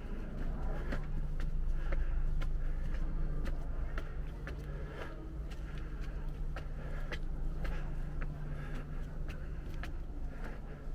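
Footsteps climbing stone steps and then walking on flagstone paving, about two steps a second, over a steady low hum.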